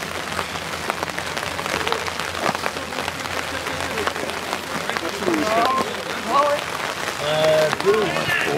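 Steady crackling patter of rain falling, made up of many fine drops. Voices call out a few times in the second half.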